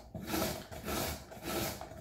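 A carrot being grated on a grater fitted over a bowl: repeated grating strokes, about one every half second.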